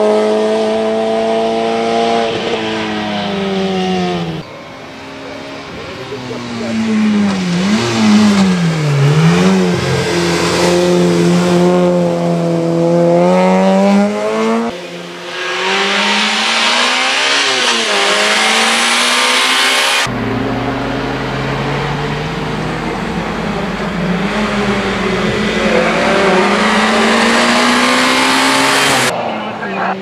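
Peugeot 106 race car's 1600 four-cylinder engine revving hard on a hill-climb course. Its pitch climbs through the gears and drops sharply at the shifts and braking points, heard in several short passes cut together.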